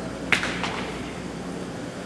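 Backstage room noise with a steady low electrical hum, and a sharp click about a third of a second in, followed by a fainter one.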